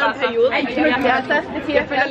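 Chatter of several voices talking over one another, with a woman's voice at the start: the steady background talk of a busy bar.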